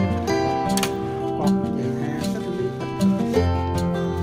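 Background music with plucked guitar, a run of sustained notes changing every half second or so.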